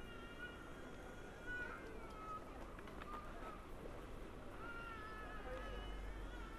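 A few high-pitched, drawn-out cries, each holding a fairly steady pitch for up to about a second and a half, over the general noise of a busy open-air square.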